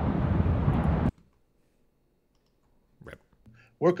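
A steady rushing outdoor noise from a playing video clip stops suddenly about a second in, as the clip is closed. Near silence follows, broken by a couple of sharp clicks, and a man begins speaking at the very end.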